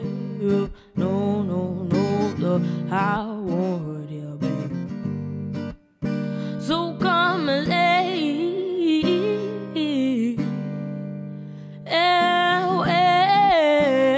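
A woman singing a soulful song, accompanied by a strummed and plucked acoustic guitar. The music drops to near silence for a moment about six seconds in, then resumes and grows louder near the end.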